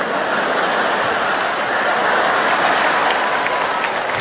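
Large audience applauding: a steady wash of clapping.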